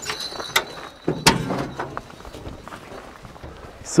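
Hood latches on a Jeep CJ7 being unclipped and the steel hood lifted open: a few sharp metallic clicks and clanks, the loudest about a second in, followed by softer handling noise.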